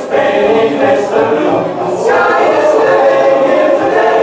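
A large men's choir singing a cappella in close harmony, holding chords that change about two seconds in.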